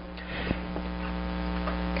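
Steady electrical mains hum on the recording, with a faint click about half a second in.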